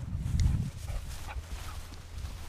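Heavy low thumps in the first half second, then a steady low rumble: the footfalls and wind of someone walking with a body-worn camera, picked up on its microphone.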